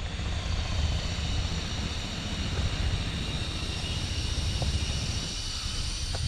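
Steady low outdoor rumble with a faint hiss over it, no distinct events.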